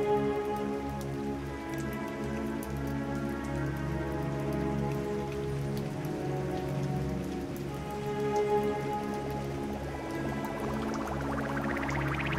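Steady patter of falling water like rain, over a sustained synthesizer drone; near the end a rising whine begins.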